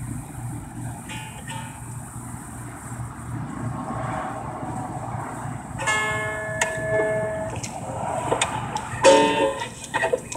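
Cigar box guitar strings plucked now and then, with a few notes ringing out about six seconds in and a short strum near the end, over a steady low hum.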